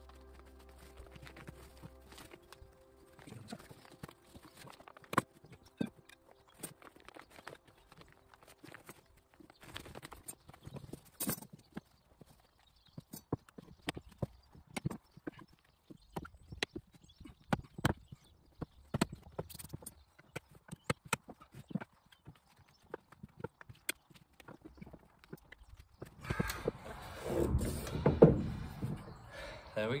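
A folding camp bed being assembled: irregular clicks and knocks as its poles and wire leg frames are pushed into place and tap against the fabric and the wooden decking. Near the end, louder rustling and clattering as the bed is lifted up onto its legs.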